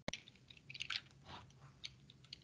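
Faint scattered clicks and small crackling noises picked up by an open microphone on a video call, led by one sharp click at the very start.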